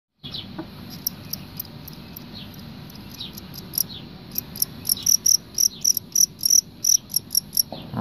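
Male fighting crickets chirping: short, high, sharp chirps, sparse at first, then a fast, loud run of several chirps a second from about halfway through until just before the end.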